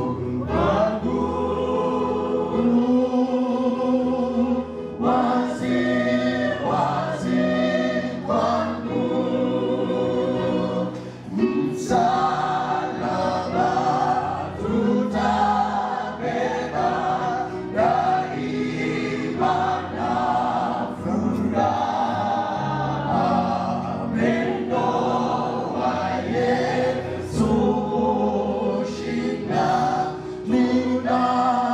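A church congregation and lead singers on microphones singing a gospel song together in chorus, continuously and fairly loud.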